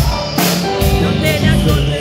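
A live rock band playing at full volume: a drum kit with kick drum and cymbal hits keeping a steady beat under electric guitars and a five-string electric bass.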